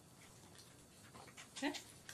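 Quiet room tone, with a brief faint voice-like sound near the end.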